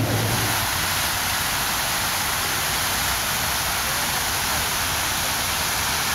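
Crown Fountain's water sheeting down its glass-brick tower and splashing onto the shallow wet plaza at its base: a steady rush of falling water.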